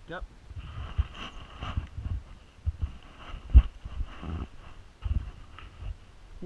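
Rowing boat taking a stroke from the bow seat: sharp knocks of oars turning in their oarlocks and of the rigging, over an irregular low rumble. The loudest knock comes a little past halfway.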